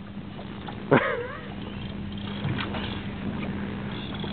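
Steady low hum under wind and water noise aboard a small fishing boat, with one short voice sound about a second in.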